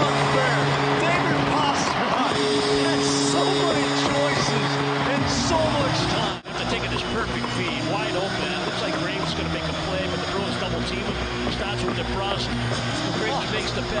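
Arena goal horn sounding in two long blasts over a cheering hockey crowd, the second blast ending about five seconds in. After a cut a second later, arena music plays under the crowd noise.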